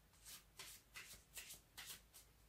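A deck of tarot cards being shuffled by hand: faint, soft swishes of cards sliding against each other, about two a second.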